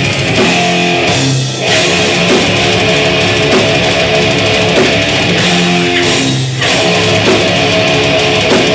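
A live death/thrash metal band playing loud distorted electric guitar and bass with a drum kit. A riff of held, repeated notes breaks off briefly about a second and a half in and again near six and a half seconds.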